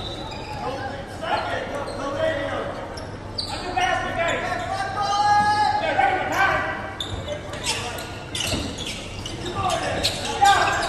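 A basketball bouncing on a hardwood gym floor, with voices echoing in a large gymnasium; a few sharp knocks come in the later seconds.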